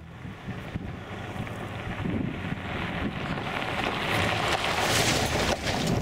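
Volkswagen Amarok pickup driving along a gravel track toward the camera and passing close by. Its engine and tyres on the loose stones grow steadily louder, with the loudest moment about five seconds in as it goes past.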